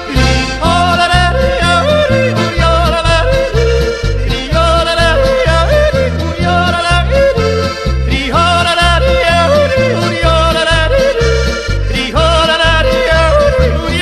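Slovenian folk ensemble music with accordion, guitar and double bass: a steady two-beat oom-pah bass under a wavering lead melody played in repeated phrases.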